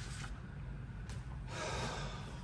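A man's audible breath in, about one and a half seconds in, over a low steady room hum.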